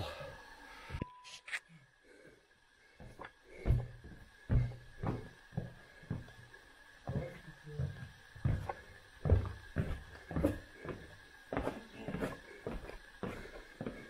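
Footsteps going down steps into a cave, a steady series of dull thuds about two a second, starting a few seconds in after a short silence.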